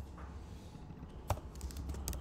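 Typing on a computer keyboard while editing code: a few scattered keystrokes, a sharper one about halfway through and a quick run of keys near the end.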